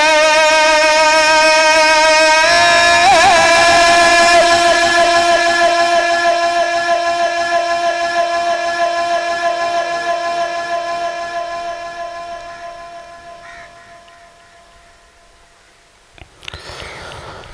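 A male qari's voice, amplified through a microphone and PA, sustaining one long note of Quran recitation (tilawat). The pitch steps up a couple of seconds in and wavers briefly, then the note is held steady and slowly fades away over the last several seconds.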